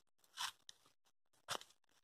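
Footsteps crunching on dry leaf litter: two steps about a second apart, with a faint click between them.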